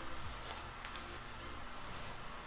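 Soft, faint swishing of a paddle hairbrush drawn through long, dry hair, over a quiet background music bed.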